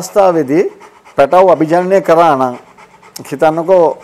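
Only speech: a man talking, in phrases with short pauses.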